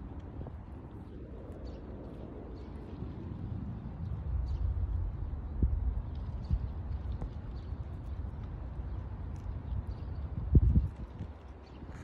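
Light taps of a brush against an open cherimoya flower and a small plastic container, knocking the pollen down into it, over a steady low rumble. There are a few faint clicks, then a louder knock near the end.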